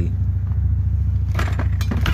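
Car engine idling with a steady low rumble, and two short clatters of gear being shifted in the cargo area about one and a half seconds in and near the end.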